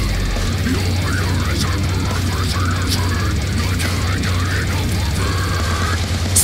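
Deathcore music played loud: distorted guitars and bass over pounding drums, with a harsh growled vocal delivered into a microphone over the track.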